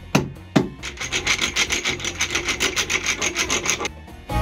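Hand woodworking: a wooden mallet knocks twice on wood, then a hand tool scrapes back and forth on wood in fast, even strokes, about eight or nine a second, for about three seconds.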